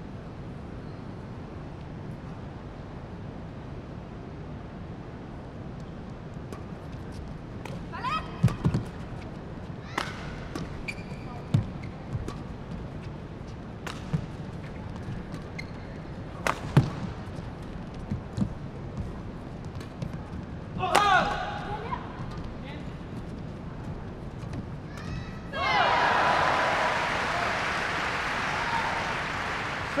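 A badminton rally: sharp racket strikes on the shuttlecock every second or two over steady hall background. Near the end the crowd cheers and applauds loudly as the point ends.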